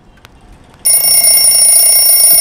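A loud electronic alarm starts abruptly about a second in and rings on as one steady, high-pitched tone.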